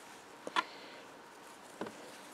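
Two short soft clicks, the louder about half a second in and a weaker one near the end, over faint room hiss.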